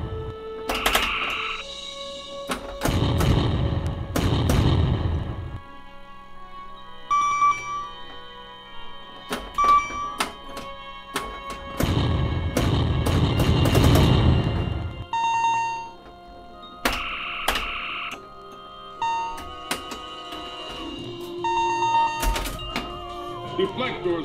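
Bally Star Trek pinball machine in play through a custom sound board. Long, noisy explosion-type effects of a couple of seconds each sound three times, and electronic bleeps and tones fill the gaps, over the game's background music. Sharp mechanical clicks and thunks from the machine run throughout.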